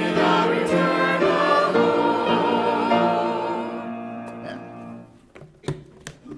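Church choir singing the closing chord of a hymn, which is held and then dies away about four seconds in. A sharp knock follows near the end.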